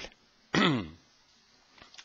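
A man's brief wordless vocal sound, falling in pitch, about half a second in; otherwise faint room tone.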